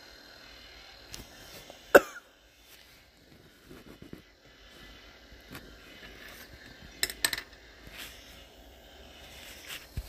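A single sharp click about two seconds in and a quick pair of clicks about seven seconds in, over faint background noise.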